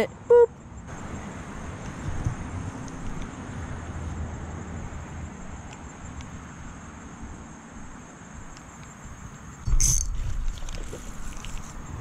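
Steady low rumble and hiss of outdoor noise on a body-worn camera microphone, with a few faint clicks from the rod and spinning reel being handled. About ten seconds in comes a sudden loud burst of rumble and rustling as the rod is swept to set the hook on a bass.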